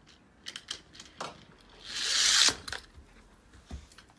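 Plastic toy train playset pieces clicking and clattering, a handful of sharp clicks, with a louder hissing rush lasting under a second about halfway through.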